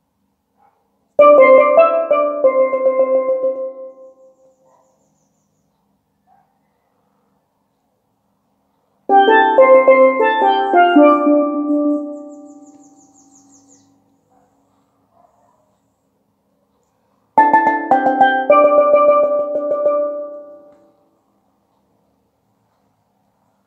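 Low tenor steelpan playing three short melodic phrases of single struck notes, each note ringing and fading. About eight seconds of silence separate the phrases.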